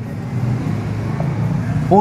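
Low, uneven rumble of a road vehicle running.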